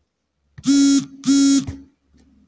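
Two loud, steady buzzing tones, each about half a second long, the first starting about half a second in and the second following after a short gap.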